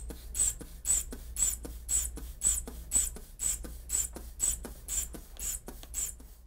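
Rubber inflation bulb of a blood pressure monitor being squeezed by hand about twice a second, each squeeze a short hiss of air, pumping up the arm cuff.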